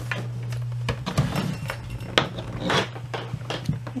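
Light clicks and clinks of a USB cable's metal plug and cord being handled and knocked against the desk and laptop, scattered irregularly, over a steady low hum.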